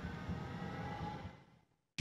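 Faint, steady city-street background noise with a low hum, fading out to dead silence about a second and a half in.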